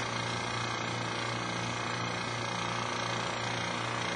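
Vacuum pump of a URG air sampler running with a steady, even hum as the system is pulled down for a leak check.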